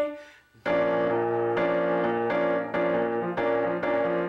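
Upright piano playing a rhythmic run of repeated B-flat chords, starting about half a second in, with the right hand's D-flat resolving up to D inside the chord (F, B-flat, D-flat to D), a bluesy passing-note variation on the chord.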